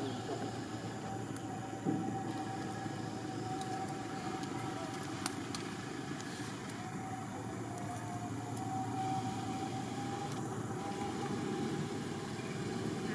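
Steady outdoor background rumble with a faint steady hum, and one sharp click about two seconds in.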